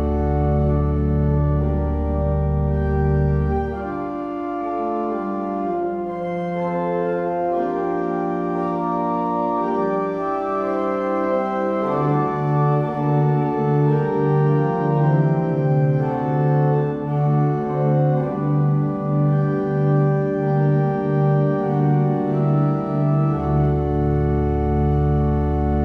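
Pipe organ playing sustained chords over a deep pedal bass. The deep bass drops out about four seconds in, and from about halfway a low note pulses evenly, about one and a half times a second, until the deep bass returns near the end.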